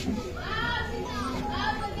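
People's voices talking and calling, rising and falling in pitch, over a steady low hum.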